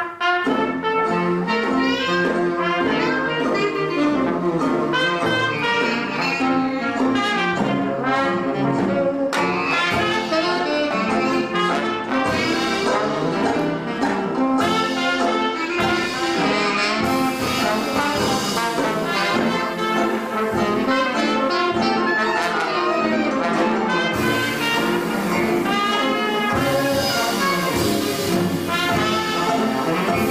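A traditional jazz band with trombone, trumpet, reeds, banjo and sousaphone playing an eight-bar blues, the whole band coming in together at once.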